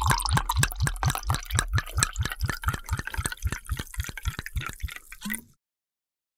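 Title-card sound effect: a rapid, even run of dripping, liquid-like clicks that fades steadily away and cuts off about five and a half seconds in.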